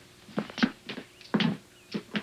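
Footsteps on a hard floor: about five uneven steps as people walk away.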